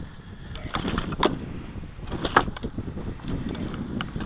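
A few short, sharp clicks and knocks of objects being handled on a cluttered workbench, over a steady low rumble of background noise.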